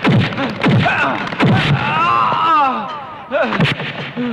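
Dubbed film fight sound effects: a run of heavy punch impacts with short falling thuds, and a man's long pained cry about halfway through, followed by more blows near the end.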